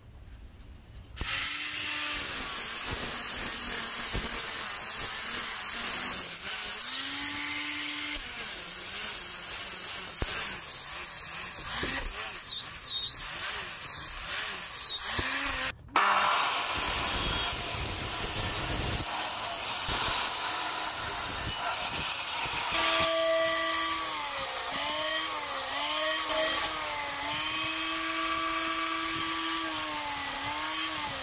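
Power tools working a squared bamboo block, starting about a second in: first a tool running under load with a wavering pitch, then, after a sudden break, an abrasive cut-off saw cutting the bamboo. Later comes an angle grinder with a sanding disc sanding the bamboo, its pitch dipping repeatedly as the piece is pressed against it.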